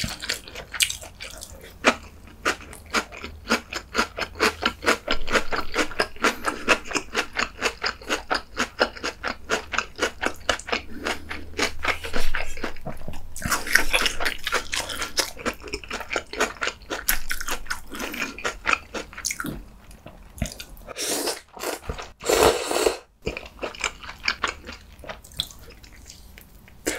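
Close-miked chewing of crunchy braised lotus root (yeongeun jorim), an even crunch about two to three times a second. Later comes eating from the kimchi sausage stew, with a few louder wet mouth sounds near the end.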